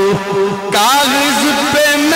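A man's voice chanting a qaseeda (devotional poem) into a microphone: a long held note ends just after the start, and after a short break the voice comes back at about three quarters of a second with a wavering, melodic line.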